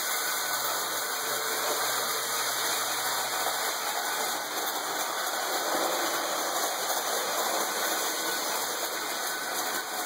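Lionel toy train running around its metal track: a steady whirring rush from its motor and wheels on the rails, with a faint low hum during the first few seconds.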